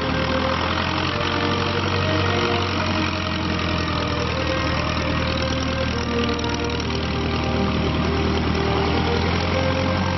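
Engine of a 1935 de Havilland Tiger Moth biplane, a four-cylinder inverted inline, running steadily at low power as the aircraft begins to taxi on grass.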